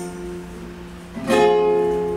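Acoustic guitar chord ringing out and fading, then another chord strummed a little over a second in and left to ring.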